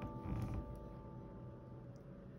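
A small clear plastic sticker being peeled from its backing and handled between the fingers, a short noisy sound about a quarter to half a second in. A held piano chord from the background music fades out under it.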